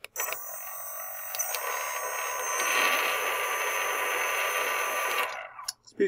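Small three-phase brushless quadcopter motor, driven by its speed controller at about a 1.2 ms control pulse, spinning with a steady whine that grows louder about two and a half seconds in. It winds down and stops a little after five seconds as the pulse drops back to the 0.9 ms idle width.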